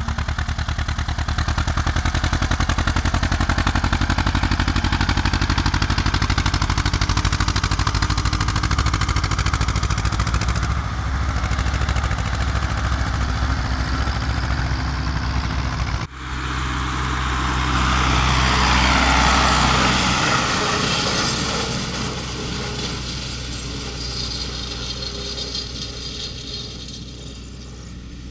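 Farm tractor diesel engines running in the field: a steady engine note with a fast even firing pulse. After a sudden cut about sixteen seconds in, another tractor engine grows louder and then slowly fades.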